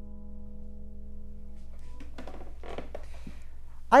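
A held chord on a 1911 New York Steinway Model A grand piano, several notes ringing together and slowly fading, stopping about two seconds in. Faint, soft sounds follow until a man's voice starts at the very end.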